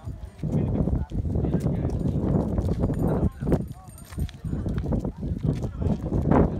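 Indistinct chatter of a group of people over a rough, irregular low rumble.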